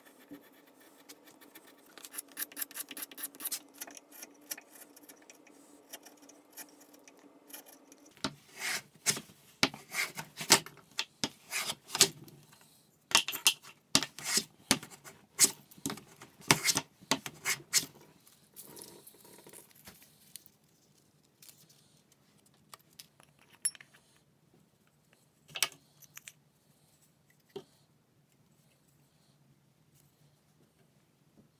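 A chisel paring a small wooden piece, with light scraping clicks. Then a metal bench plane takes a run of loud strokes along a board. Near the end come a few scattered knocks as wooden parts are handled.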